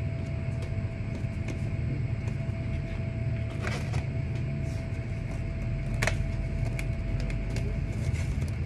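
Steady low machinery rumble with a constant hum running under it, broken by a few sharp clicks a little before halfway and again about six seconds in.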